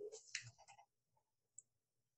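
Near silence, with one faint, brief click about one and a half seconds in: a computer mouse click advancing the presentation slide.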